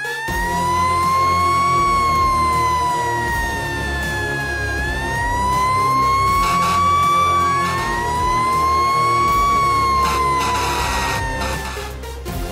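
Fire engine siren wailing in three slow rise-and-fall sweeps over a steady low rumble.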